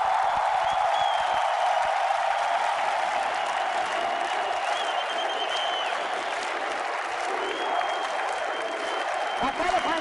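A large crowd applauding steadily and without a break, with voices mixed in.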